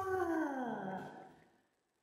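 A person's drawn-out, sing-song exclamation that slides down in pitch and fades out about a second and a half in.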